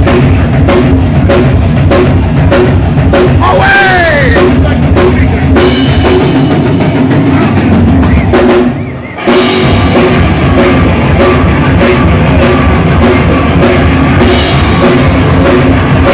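A live rock band playing loud, with pounding drum kit and distorted guitar. The band stops short for a moment about nine seconds in, then crashes back in.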